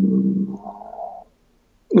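A man's voice holding a long, steady hesitation sound, a drawn-out "uhh" in the middle of a sentence, which trails off a little over a second in.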